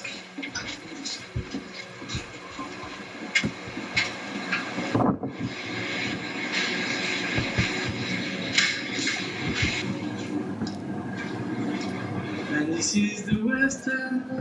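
Indistinct background voices of people talking, not clear enough to make out, with scattered clicks and knocks through it.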